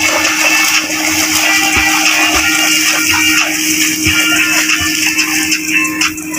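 Water splashing continuously as a swimmer strokes through shallow sea water close by, with music faintly underneath.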